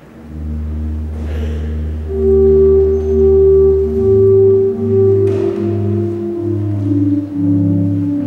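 Church organ playing slow, held chords. About four seconds in, the bass moves up to a new note sounded in separate repeated strokes under the sustained upper notes.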